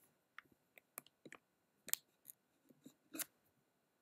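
Near silence with a scattering of faint, irregular clicks, two of them a little louder, about two and three seconds in.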